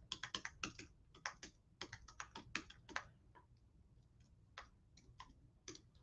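Faint typing on a computer keyboard: a quick run of keystrokes for about three seconds, then a few scattered single keystrokes.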